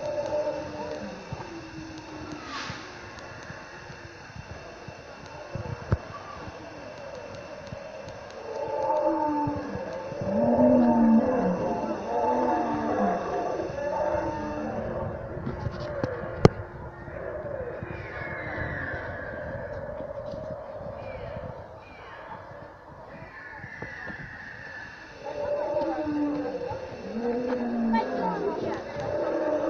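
Recorded dinosaur roars and growls from animatronic dinosaur models, low drawn-out calls that grow loudest in the middle of the stretch and again near the end. A single sharp click comes about halfway through.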